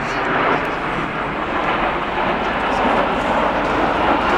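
Steady jet noise from a formation of Alpha Jet trainers flying overhead, with crowd voices mixed in.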